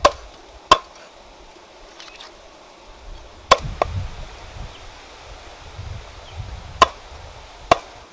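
Cleaver chopping on a round wooden chopping block: six sharp strokes in three pairs, one pair at the start, one about three and a half seconds in, one near the end.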